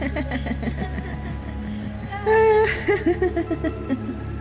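A little girl's voice about two seconds in, a held high note breaking into a wavering laugh, over a low steady music drone.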